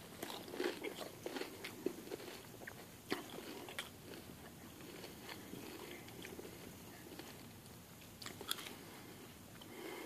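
Faint close-up chewing and crunching of a mouthful of salsa. Irregular crunches come thick over the first few seconds, then thin out, with one sharper crunch near the end.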